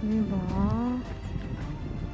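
Background music, over which a short pitched voice-like call sounds for about the first second, dipping and then rising in pitch before it stops.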